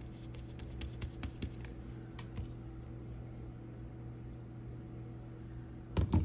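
A run of faint light ticks and scratches from small items being handled on a craft table, over a steady low hum; the ticks stop after about two and a half seconds, leaving only the hum.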